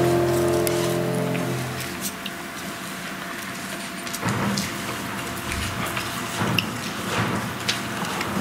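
Offertory music played on a keyboard ends on a held chord about two seconds in. Soft rustling and a few small knocks of handling follow.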